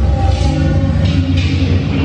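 Dinosaur ride's Time Rover vehicle in motion: a loud, steady deep rumble with the ride's music playing over it.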